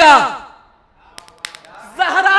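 A man's voice reciting an Urdu elegy draws out the last syllable of a line with a falling pitch and fades away, followed by a pause of about a second with a few faint clicks and a breath before the next line begins.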